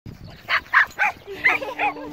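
A dog barking, five short, quick barks in a row.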